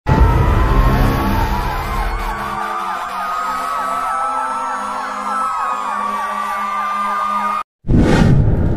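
Edited-in intro soundtrack: a siren-like warble of fast up-and-down pitch sweeps over a long, slowly rising tone and steady low hum, with a heavy low rumble for the first couple of seconds. It cuts off suddenly just before the end.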